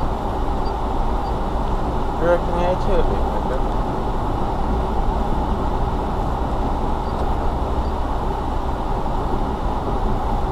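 Car driving slowly along a gravel lane, heard from inside the cabin: a steady rumble of engine and tyres on loose gravel. A brief wavering voice-like sound comes about two seconds in.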